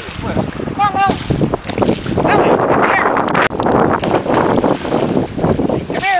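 Water splashing and sloshing in a stock-tank pool as an American Water Spaniel swims and scrambles at the rim, with a few short, high-pitched calls over the splashing.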